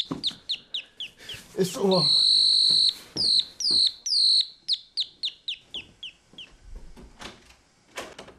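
A high, bird-like whistled call: a run of short falling chirps, one long held note about two seconds in, then chirps coming faster and fainter until they fade out.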